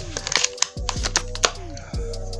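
Background music with a steady low bass, downward-gliding bass swoops and fast, irregular clicking percussion.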